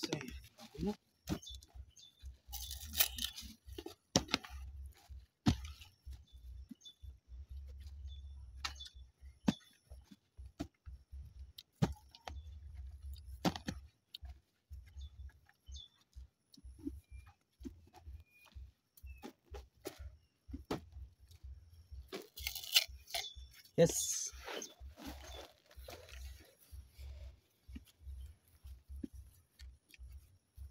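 Hand hoe scraping and chopping loose soil back into a planting hole around a banana sucker, as irregular knocks and scrapes. There are louder bursts of scraping about three seconds in and again a little past twenty seconds.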